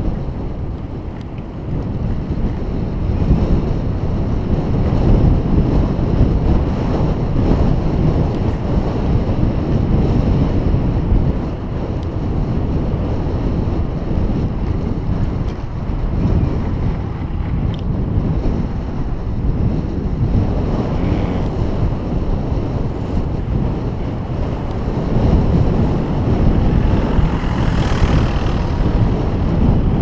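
Wind buffeting the microphone of a camera mounted on a moving bicycle: a loud, steady, gusting rumble.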